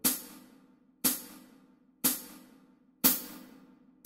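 Four cymbal strikes, one per second, each ringing briefly and dying away. They count in the tempo of 60 beats a minute over a rest before the bassoon enters.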